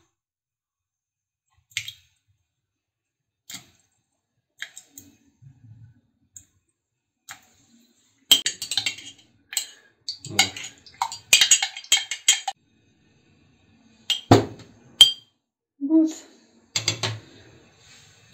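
A metal spoon stirring yeast into warm water in a glass mug, clinking and scraping against the glass. It is sparse at first and comes in a dense run from about eight to twelve seconds in, followed by one louder knock.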